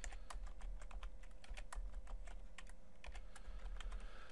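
Typing on a computer keyboard: quick, irregular key clicks as decimal numbers are keyed in.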